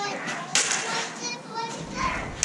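Combat lightsaber blades striking together in sparring: one sharp clack about half a second in, ringing in a bare concrete room. Voices are heard in the background.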